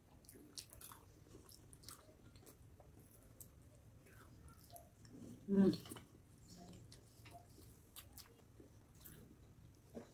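Soft chewing and biting, with small wet mouth clicks, as a person eats a boiled egg. A brief hum is heard about halfway through.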